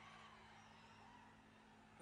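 Near silence: a pause between speech, with only a faint steady low hum under it.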